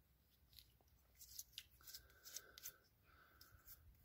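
Near silence with faint, scattered clicks and rustles of hands handling a Makita 18V lithium-ion battery's cell pack and plastic casing.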